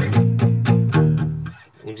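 Steel-string acoustic guitar with a capo, in open C-G-D-G-A-D tuning, plucking a run of bass notes on the low strings at about four notes a second. The notes stop about a second and a half in.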